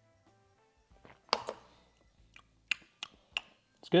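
A man gulping a drink from a glass: a handful of short, sharp swallowing and mouth clicks spread over the last few seconds. Faint background music plays underneath.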